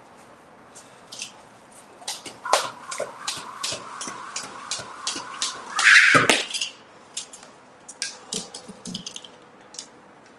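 Exercise equipment clattering: a run of quick clicks, about three or four a second for several seconds, ending in a loud clatter and heavy thud about six seconds in, with a few scattered clicks after.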